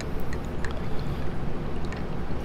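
A soft-bristle toothbrush swishing through water in a glass bowl, mixing in dish soap: a steady soft sloshing with a few faint ticks.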